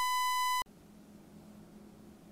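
A steady, high electronic beep tone, under a second long, that cuts off abruptly. Faint room tone with a weak low hum follows.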